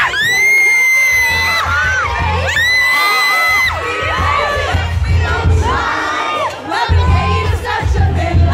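Fans screaming and cheering close by over live pop music with a bass beat: two long, high-pitched screams in the first half, then shorter shrieks and cries.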